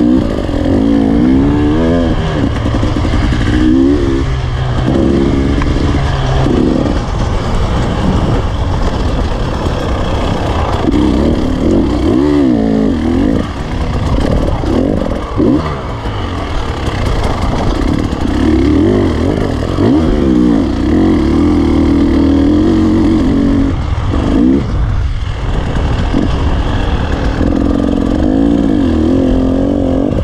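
Enduro motorcycle engine heard close up from the bike itself, revving as the throttle opens and closes, its pitch repeatedly rising and dropping, with rattle from the bike over rough ground. A short lull in the engine comes near the end.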